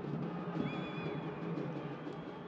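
Stadium sound of fans beating drums in the stands, a steady drumming that carries over the play. About a third of the way in there is a short, warbling high whistle.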